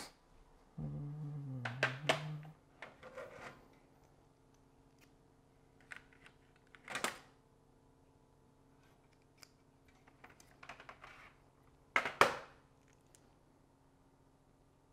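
Scattered small clicks, taps and clatter of small metal hardware and tools being handled at a tabletop, the loudest pair of clicks near the end. A low hum lasting under two seconds begins about a second in.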